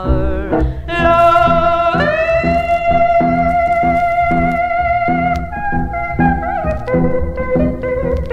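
Country band instrumental break: a lead instrument plays long held notes that slide up into pitch and step down near the end, over a steady beat of strummed rhythm guitar and bass.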